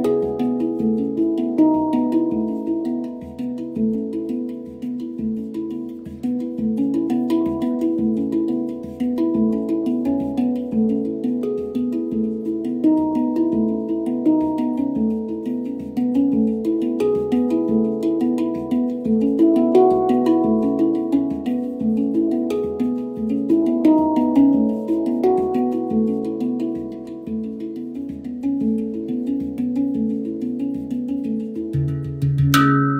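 Handpan played with the fingertips: a continuous run of ringing steel notes, struck in quick succession so that each note overlaps the next.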